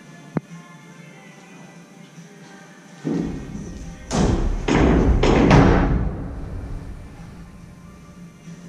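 A person jumping and dropping into a pit of foam cubes: a run of thuds and the rushing, rustling noise of foam blocks being shoved about for about three seconds, loudest near the middle of that stretch. Faint music is underneath, and there is one sharp tap shortly before.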